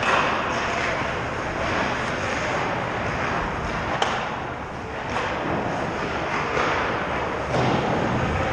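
Ice hockey practice on a rink: skate blades scraping and carving on the ice, sticks and pucks clattering, and players' voices echoing in the arena. A sharp crack, like a puck strike, about halfway.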